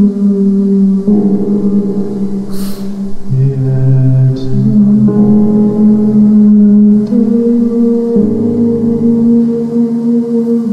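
Playback of an improvised piano demo recording: slow, sustained chords ringing on, the harmony changing every second or two.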